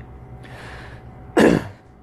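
A man clears his throat once, a short, sharp burst about one and a half seconds in.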